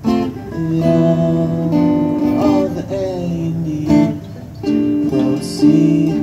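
Two acoustic guitars strumming chords in an instrumental passage of a live song, each new strum ringing on into the next about every second.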